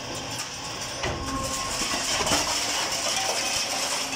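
Vezzani steel conveyor running, a steady mechanical clatter of steel pans and chain, with a few sharper metal knocks from the scrap metal it carries.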